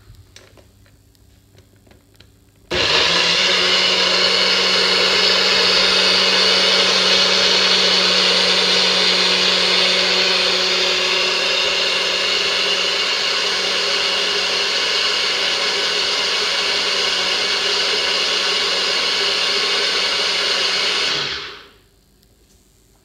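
Nutribullet personal blender switched on about three seconds in, running steadily with a motor hum as it blends coconut milk and chopped lemongrass, ginger, chili and onion into a smooth sauce, then cutting off shortly before the end.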